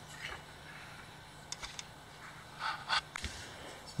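Faint clicks and short scraping sounds of small hand work, a wire being fitted and screwed onto a terminal of an old DC electric motor, with the loudest scrapes about three seconds in, over a low steady hum.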